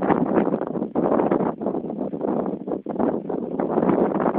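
Wind buffeting a phone's microphone, a dense noise that rises and falls unevenly, with rustling mixed in.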